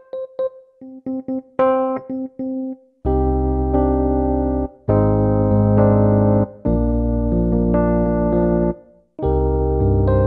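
Roland Jupiter-80 electric piano sound played from a Nektar Impact LX88 controller keyboard over MIDI: first a few short notes struck at different strengths, then, from about three seconds in, full held chords with brief breaks between them. The velocity-sensitive keys change the tone, bringing in other sounds when struck harder.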